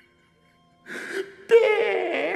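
A man drawing a sharp breath, then letting out a loud wavering cry with his pitch sliding, after about a second of near quiet.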